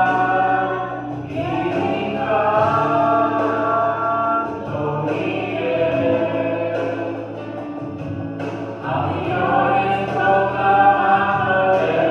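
A man singing a slow song into a handheld microphone, holding long notes in phrases of about four seconds with short breaths between them.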